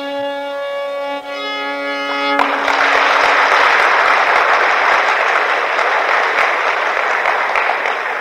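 Violin holding a long final note of a Carnatic phrase in raga Todi, ending about two and a half seconds in, when audience applause breaks out and carries on steadily.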